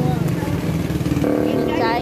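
A small vehicle engine idling steadily with a rapid even pulse, with people's voices over it; a second, higher steady hum comes in a little past halfway.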